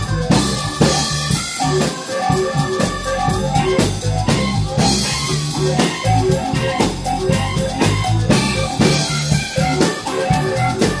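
Live band playing a song: a drum kit keeps a steady beat under guitar and other sustained pitched instruments.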